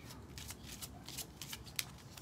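A deck of cards being shuffled by hand: a few faint, irregular card flicks, with a slightly sharper one near the end.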